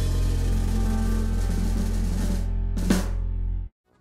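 Music jingle of a logo ident: a long held chord over a deep, steady bass note, with a short swish about three seconds in. It cuts off abruptly just before the end.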